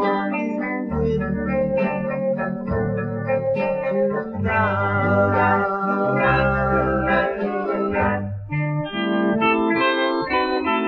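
Doo-wop record playing a guitar-led passage without clear sung words.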